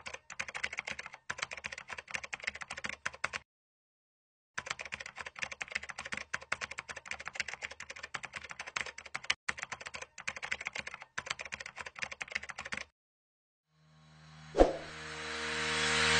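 Rapid computer-keyboard typing clicks, a sound effect keeping time with on-screen text typed out letter by letter, in two runs with about a second's pause between them. Near the end a rising swell and a single hit bring in electronic music.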